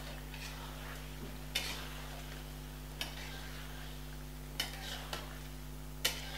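A metal spatula stirring chicken and beaten yogurt in a steel karahi, with a few light scrapes and clinks against the pan, as the yogurt is worked in to be fried down.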